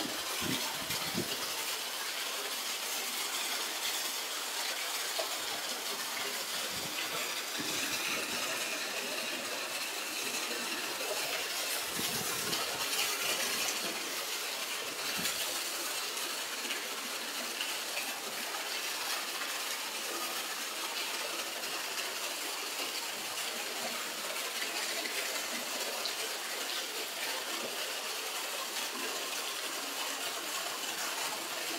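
A jet of water gushing steadily into a shallow, half-filled tiled pool, splashing as it lands.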